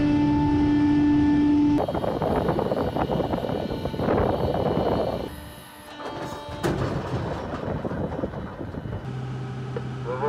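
Heavy military vehicle machinery: first a steady drone with pitched tones, then rumbling mechanical noise with a swelling rush about four seconds in and a sudden loud onset near seven seconds. A low steady hum starts near the end.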